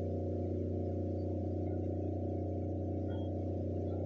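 Steady low electrical hum with a stack of fainter overtones above it, unchanging throughout: mains hum from the church's microphone and sound system.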